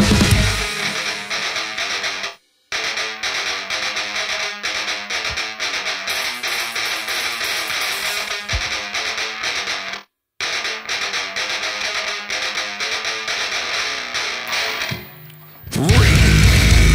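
Distorted electric guitar playing on its own after the drums and bass drop out about half a second in. It stops dead for a moment twice. The full heavy metal band, drums included, crashes back in just before the end.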